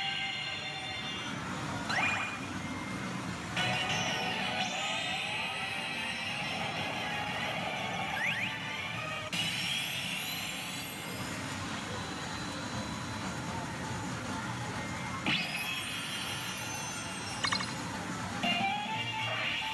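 Tom and Jerry pachinko machine playing its music and sound effects, with whistling pitch glides. The sound changes abruptly a few times, at about 3.5, 9 and 15 seconds in.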